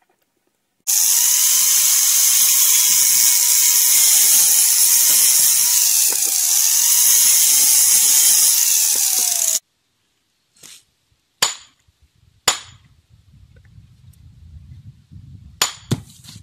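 Angle grinder cutting through a white brick: a loud, dense grinding hiss with a whine that dips and recovers as the disc bites. It runs for about eight seconds and cuts off suddenly, followed by several sharp knocks.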